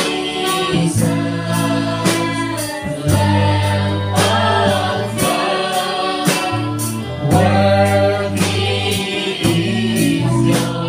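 Small mixed choir of men's and women's voices singing a Christian worship song in held, sustained phrases, over instrumental accompaniment with a steady beat.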